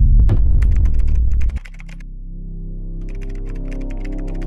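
A loud, low rumbling sound-effect hit cuts off about a second and a half in, leaving a soft held music chord. Near the end, rapid computer-keyboard typing clicks start: a typing sound effect for on-screen text being typed out.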